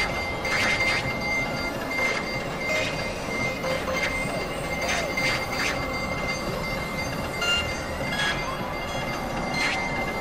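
Experimental synthesizer noise piece: a dense, grinding noise drone with a steady high whistle-like tone held through it, and short screeching sweeps breaking in every second or two.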